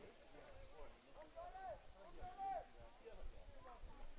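Faint, distant voices calling out, a few short calls in the middle, over quiet open-air ballpark ambience.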